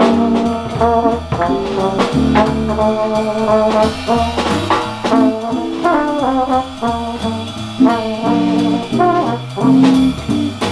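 Small jazz band playing an instrumental passage: a trumpet carries the lead over a moving bass line and drums.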